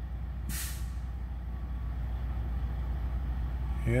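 Steady low rumble of an idling vehicle engine, with one short burst of hiss about half a second in.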